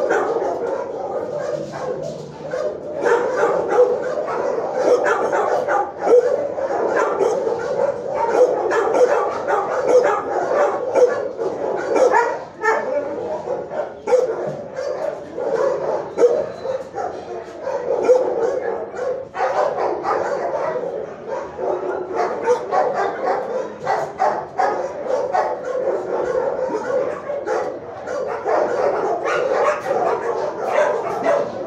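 Many shelter dogs barking and yipping at once in a kennel block, a dense, continuous overlapping din that never lets up.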